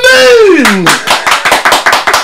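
A drawn-out vocal exclamation that slides down in pitch, followed about half a second in by a quick run of hand claps, roughly seven or eight a second, from two people clapping together.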